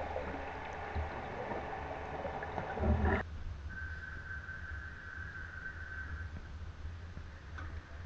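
Muffled sound of water heard through a camera just under the surface, a busy sloshing noise over a low rumble. About three seconds in it cuts to open air on a boat at sea, with a low rumble and a faint steady high tone lasting a couple of seconds.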